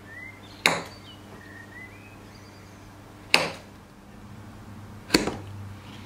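Kitchen knife slicing through a sugar-coated log of matcha cookie dough and striking the wooden cutting board: three sharp knocks, two to three seconds apart.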